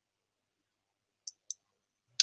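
Near silence, broken by two faint, very short high clicks a quarter of a second apart about a second and a half in.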